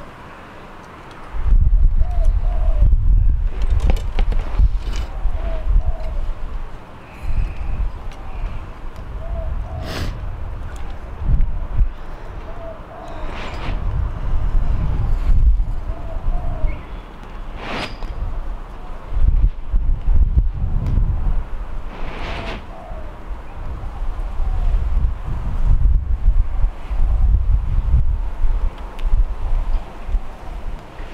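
Gusty wind buffeting the microphone, a loud uneven low rumble, with a few sharp clicks from the compound bow being handled and drawn.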